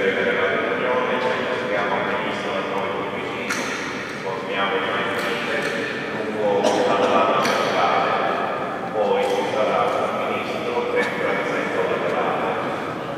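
A priest's voice reciting a prayer of the Mass aloud, amplified and echoing in the large cathedral, in long drawn-out phrases.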